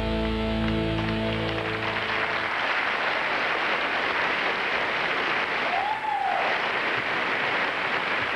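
Large banquet audience applauding steadily, with a tribute video's music ending on a held chord that fades out about two seconds in, leaving the applause alone.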